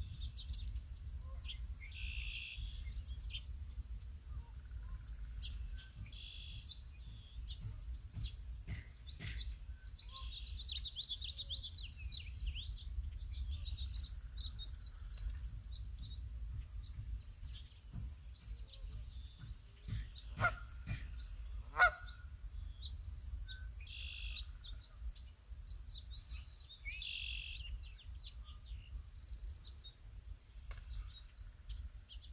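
Birds calling: scattered short bursts of high calls, with two louder, lower calls a second and a half apart about twenty seconds in, over a low steady rumble.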